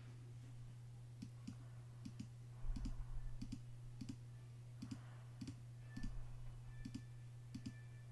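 Computer mouse button clicking, about a dozen sharp clicks spread unevenly, several in quick pairs, over a steady low electrical hum.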